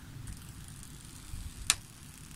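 Protective plastic film being peeled off a clock radio's glass display by hand: a faint low rustle of handling, with one sharp click near the end.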